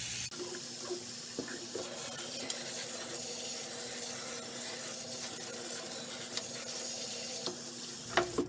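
Tap water running from a faucet into a stainless steel sink and through a pierced bisque-fired ceramic vase as its inside is rinsed of drilling dust. The flow is steady, with a few light knocks, and stops at the very end.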